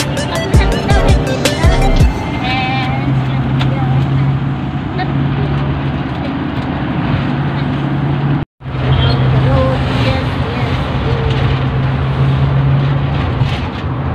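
Steady engine and road noise inside the cabin of a moving van, a constant low hum under a wash of road noise, with music during the first couple of seconds. A split-second silence breaks it a little past halfway.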